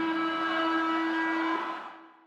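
A long, steady held chord, one strong low note with many tones above it, closing the outro, fading out near the end.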